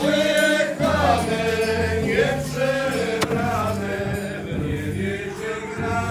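Polish folk band playing a devotional song as a dance tune on fiddles, double bass and drum, with one sharp click a little after three seconds in.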